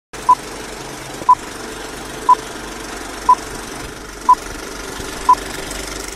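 Old-film countdown-leader sound effect: six short, identical high beeps evenly one second apart over a steady rattling, crackling background like a running film projector.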